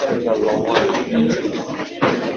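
Many students talking over one another at once, with scattered knocks and rustles, as a class breaks up and packs up at the end of a lecture.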